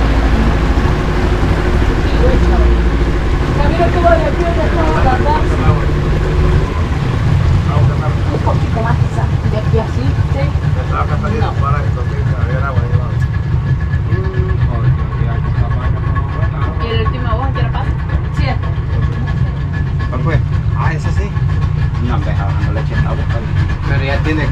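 Outboard motor of a small passenger boat running steadily under way, with water rushing past the hull; its low note shifts about seven seconds in. Faint voices talk over it.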